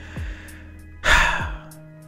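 A man's quick intake of breath about a second in, over a quiet background music bed of steady low tones.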